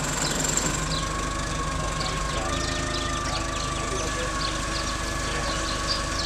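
Small birds chirping and calling in quick, repeated short notes, getting busier near the end, over an engine idling steadily with a high whine.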